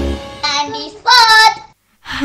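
Music fading out, then a short, high-pitched phrase sung in a child's voice, like a programme jingle, which stops shortly before the end.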